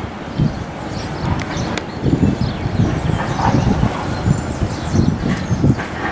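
Wind buffeting the camera microphone in uneven gusts, with faint high chirps above it.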